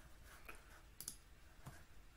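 Near silence with a few faint clicks of a computer pointing device, as a web form's dropdown menu is clicked open.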